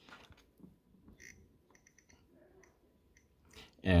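Faint clicks from a Nest thermostat as its ring is turned to scroll through the on-screen menu, a quick run of ticks near the middle.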